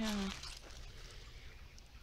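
Shallow creek water running over stones, a faint steady trickle, after the end of a spoken "yeah" at the very start.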